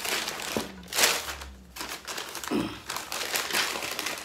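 Newspaper packing crinkling and rustling as it is handled inside a cardboard box, in several rustles, the loudest about a second in.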